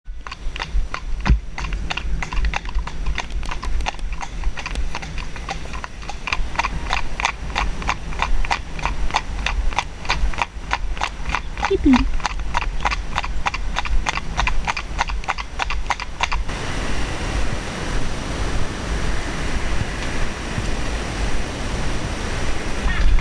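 Ponies' hooves clip-clopping at a walk on a hard road surface, a steady beat of about three to four strikes a second. About sixteen seconds in, the crisp hoofbeats give way to a steady rushing noise with no clear beat.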